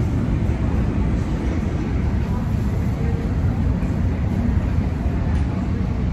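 Steady low rumble of airport terminal background noise, with a faint murmur of distant voices.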